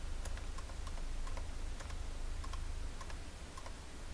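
Computer keyboard keys pressed lightly and irregularly, about a dozen faint clicks, over a steady low hum.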